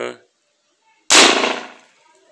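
A single shot from a 9 mm PCP air rifle firing a 75-grain pellet: one sharp report about a second in, fading away over most of a second.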